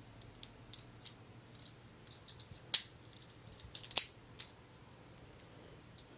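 Small hard Beyblade parts clicking and clacking against one another as they are handled and lined up: a few sharp, irregular clicks, two louder ones around the middle.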